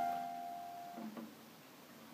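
A plucked note on a gypsy jazz (manouche) acoustic guitar ringing on and fading out. It is damped about a second in, with a faint touch of the strings just after.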